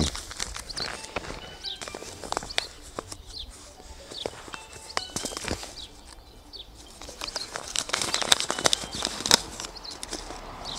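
Paper seed packet being handled and opened, rustling and crackling in irregular clicks that grow busier near the end.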